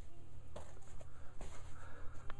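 Snapback caps handled and lifted off a stack by hand: a few soft knocks and rustles over a steady low hum.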